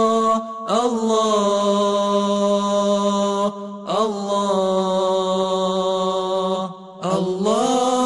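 Vocal chant with no instrumental backing: long held notes in phrases that each begin with an upward slide of pitch. There are short breaks about half a second in, midway, and about seven seconds in.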